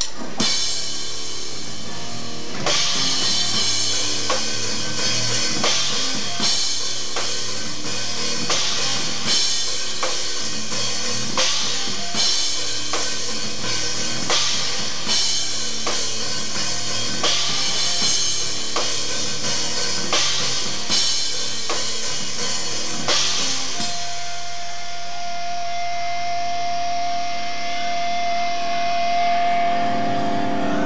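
A live rock band playing a song, with a drum kit keeping a steady beat of snare, bass drum and cymbal hits under the other instruments. About 24 seconds in the drum hits stop and sustained ringing notes carry on.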